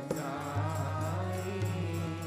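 Sikh devotional kirtan: voices singing a hymn over sustained harmonium notes with tabla accompaniment, one sharp drum stroke right at the start.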